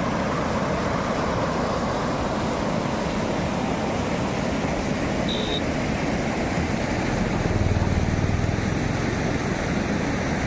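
Fast, shallow river water rushing steadily over rocks in white-water rapids. A short high tone sounds about five seconds in, and a low rumble swells for a second or two after about seven seconds.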